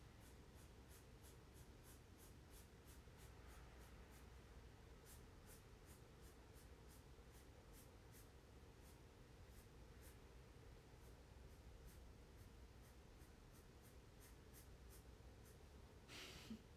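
Faint, quick pen strokes colouring in a drawing, about two or three a second, over a low steady room hum.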